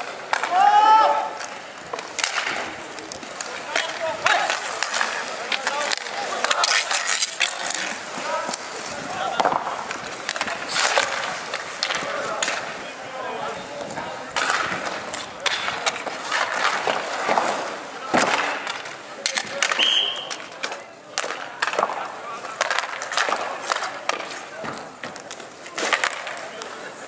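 Inline hockey in play on a concrete rink: skate wheels rolling and scraping, sticks clacking sharply against the puck, each other and the boards, and players' voices calling out, with one loud shout about a second in. A brief high whistle sounds about twenty seconds in.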